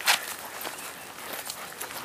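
Shuffling footsteps and paws scuffing on dry leaf litter and dirt as a dog grips and tugs at a handler's bite sleeve, with a short knock just after the start.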